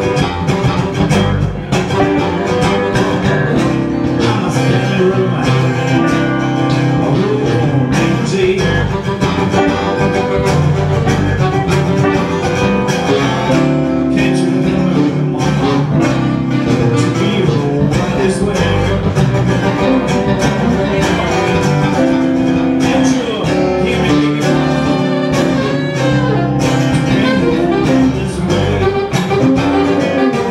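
Live blues band playing: saxophone over acoustic and electric guitars, a steady dense groove without a break.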